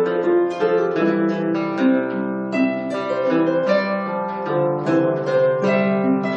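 Celtic harp and Irish bouzouki playing an instrumental passage together: a quick run of plucked notes over lower, ringing accompaniment notes.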